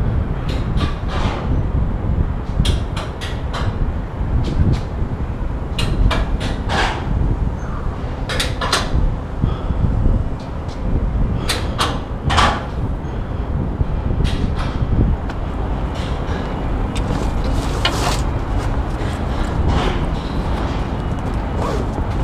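Irregular metallic knocks and clanks of feet and hands on the Eiffel Tower's iron stairs and girders during a hurried climb, coming in small clusters every second or two. Underneath is a continuous low rumble of wind and body-worn camera handling.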